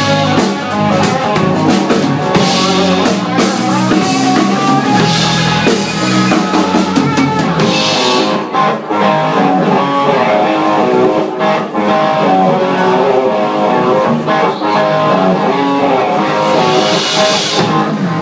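Live rock band playing an instrumental passage: electric guitar, electric bass and drum kit, loud throughout.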